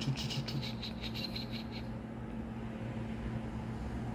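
Quick clicking of a TI-89 Titanium graphing calculator's keys, about a dozen rapid presses in the first two seconds as a menu is scrolled through, then only a faint steady low hum.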